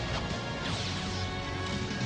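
Dramatic cartoon soundtrack music under a crash and sweeping, falling whooshes: the sound effects of a character's armor transformation.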